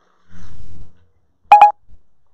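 A dull low bump, then about one and a half seconds in two short, loud electronic beeps in quick succession: a video camera's beep as its recording is stopped.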